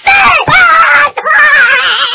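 A person screaming loudly in high, wavering cries: three long cries with short breaks between them.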